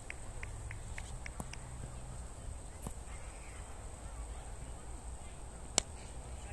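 Quiet open-air ambience with a short run of faint high bird chirps in the first second or so. Near the end comes a single sharp crack of a cricket bat striking the ball.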